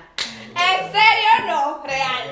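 A single sharp hand clap, then a woman's high, wavering vocal cry lasting over a second.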